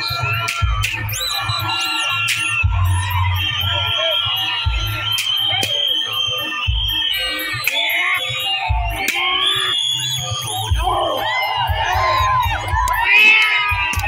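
Loud music of a Bantengan bull-dance troupe, mixed with a crowd shouting and screaming, with irregular low thumps and sharp clicks scattered through it.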